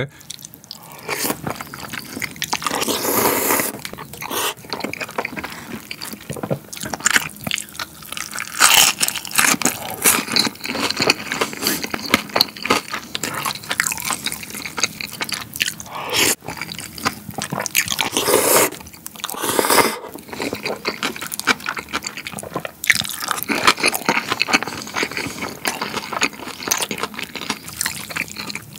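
A person eating kongguksu close to the microphone: noodles slurped out of cold soy-milk broth and chewed, with the wet sounds of broth dripping off the noodles. Several long slurps stand out among the smaller chewing and mouth sounds.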